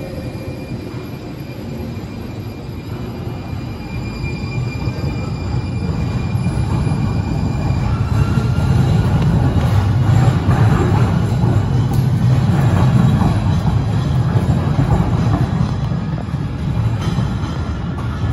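Siemens light rail train pulling out of a station, a steady electric whine over a low rumble. About eight seconds in the whine fades and a louder low rumble takes over.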